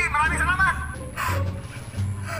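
A person's voice rising and falling through the first second, likely giggling, then a short scuffing noise from the phones being handled, over a low hum.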